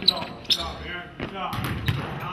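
Basketball bouncing on a hardwood gym floor several times, with voices in the background.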